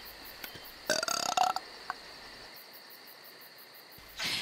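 A man burps once, about a second in, a short pitched belch lasting about half a second, after drinking water. Faint crickets chirp in the background.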